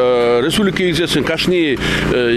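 Speech only: a man talking steadily in an interview.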